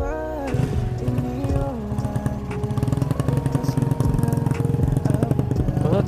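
Background music over a Honda Astrea Grand's small single-cylinder four-stroke engine running as the bike rides two-up; the engine's rapid low pulsing comes in about half a second in and carries on under the music.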